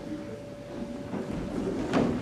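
Quiet hall room tone with a faint steady hum and soft, scattered stage or audience movement sounds. A small sharp knock comes near the end.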